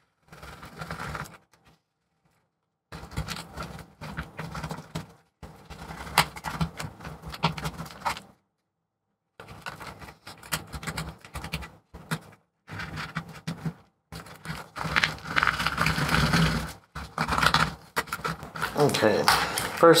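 Plastic pry tool scraping and levering under a glued-in MacBook Pro battery cell, its adhesive softened with acetone, in irregular scratchy bursts that grow louder in the second half as the cell works loose.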